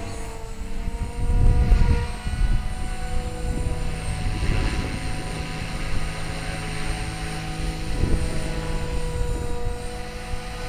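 Align T-Rex 500 electric RC helicopter flying at a distance, its motor and rotor making a steady whine that drifts slightly in pitch. A louder low rumble comes and goes between about one and two and a half seconds in.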